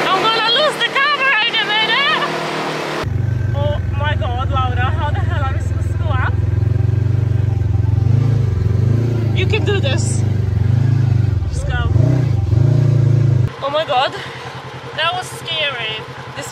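Polaris RZR side-by-side buggy engine running loud and steady while driving over sand dunes, its pitch dipping and rising several times near the end as the throttle changes. Women's voices are heard over it at the start and again near the end.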